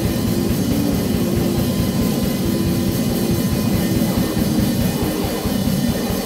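Live instrumental rock band playing loud and steady on electric guitars and a drum kit.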